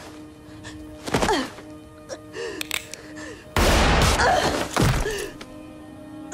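Film soundtrack: a score of held notes under action sound effects, with a heavy thud about a second in and a louder crashing burst from about three and a half to five seconds.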